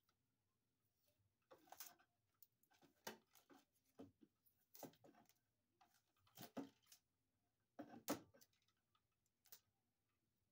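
Faint hand-tool handling at an electrical box: a series of short, irregular scrapes, rustles and clicks as pliers work the taped-up receptacle wires.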